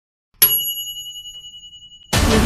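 A single bright bell ding, about half a second in, ringing out and fading over about a second and a half: a notification-bell sound effect for a subscribe-button animation.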